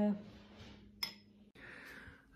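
A spoon clinks once against a bowl about a second in, then there is faint rustling.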